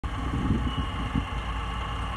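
Heavy diesel engines of a dump truck and an asphalt paving machine running in a steady low rumble, with a thin high whine above it, as the raised dump bed feeds asphalt into the paver.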